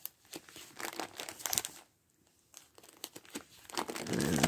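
Handling noise: rustling and light clicking of things being picked up and moved, in two stretches with a short lull a little before two seconds in.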